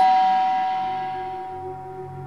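Background-score music: a single held high tone that comes in sharply and slowly fades over a low sustained drone.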